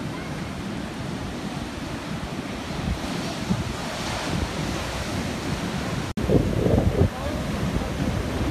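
Rough sea surf churning and breaking on the shore, with wind buffeting the microphone. About six seconds in the sound cuts out for a moment, then comes back with louder buffeting.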